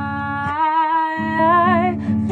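A woman singing one long held note with vibrato, rising in pitch about halfway through, over a strummed acoustic guitar that pauses briefly in the middle.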